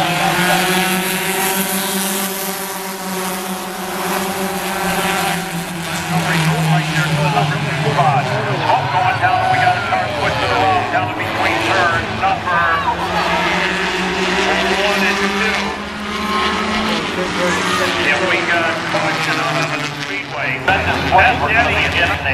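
A pack of four-cylinder stock cars running around a short oval, several engines sounding together, their pitch rising and falling as the cars pass and pull away.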